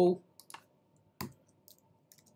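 A few sharp computer keyboard keystrokes, the loudest about a second in, typing Ctrl+C to stop a running Flask server in the terminal.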